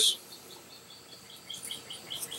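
Faint, high-pitched chirping in the background, short chirps repeating several times a second, with a few soft clicks.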